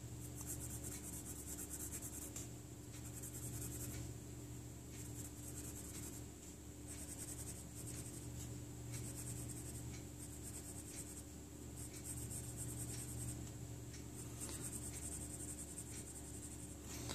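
Pencil scratching on paper, sketching short lines in strokes of about a second each with brief pauses between, over a low steady hum.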